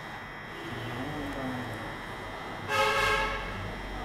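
A vehicle horn sounds once near the end, a short steady blast of about half a second.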